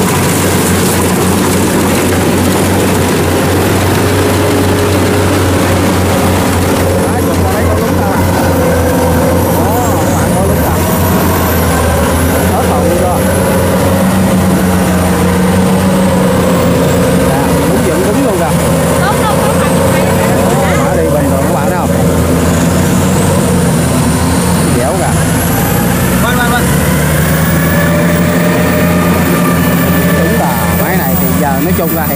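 Kubota DC70 Pro combine harvester's diesel engine running steadily under load as it cuts and threshes rice, a constant loud drone that hardly changes in pitch.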